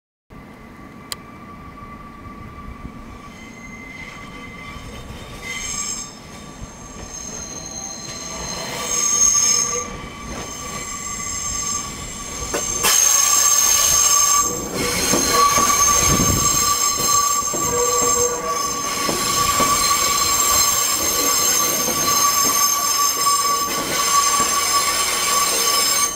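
Steel wheels of Nankai electric trains squealing on curved track as the trains pass close by, a steady high-pitched squeal with shriller whistling tones above it. It grows louder as a 2000 series train draws near, turning into a loud rumble and squeal from about halfway through as the cars roll past.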